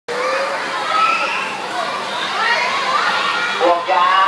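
A group of boys shouting and talking over one another, many voices overlapping at once, with one nearer voice standing out near the end.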